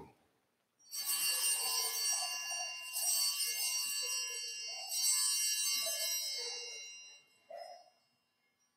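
Altar bells, a cluster of small hand bells, rung three times about two seconds apart, each ring shimmering and fading away. They mark the elevation of the host at the consecration.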